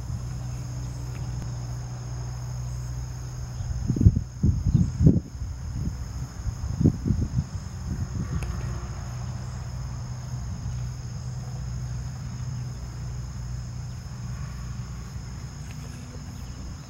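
Insects trilling in a steady, high drone of two close tones, over a low steady rumble. Low buffeting on the microphone comes about four seconds in and again around seven seconds.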